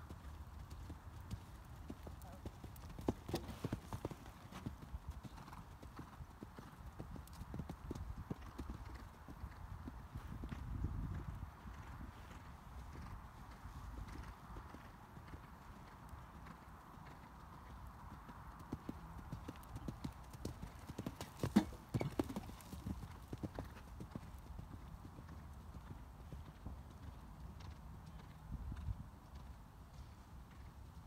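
Horse's hooves beating on a sand arena at a canter, a steady run of dull thuds with a few sharper knocks, the loudest a little past twenty seconds in.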